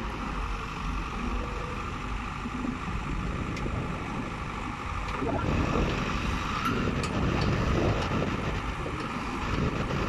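Case 580 Super M backhoe loader's diesel engine running while the backhoe boom and bucket are worked hydraulically; it grows louder about halfway through as the hydraulics take load, then eases back.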